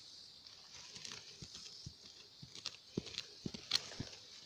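Hand digging in stony, root-filled soil to unearth a wild yam: irregular scrapes and small knocks of a digging tool against earth, pebbles and roots, a few louder ones near the end.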